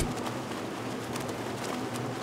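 Water splashing from a swimmer's front-crawl arm strokes, a steady wash with a few small sharp splashes, over a faint low hum.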